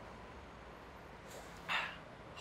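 Quiet room tone while a man swigs from a plastic drink bottle, then a short breathy exhale near the end as he lowers the bottle.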